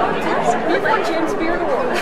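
Crowd chatter: many people talking at once in a large hall, a steady, loud babble of overlapping voices.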